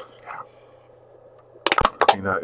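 An empty aluminium drink can crushed in one hand: a quick run of loud, sharp metal crackles near the end. A brief vocal sound comes just before it, right at the start.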